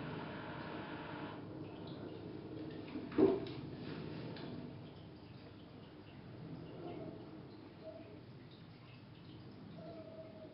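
Distant red fox barking a few times, faint against outdoor background noise; the clearest and loudest bark is about three seconds in, with fainter ones later.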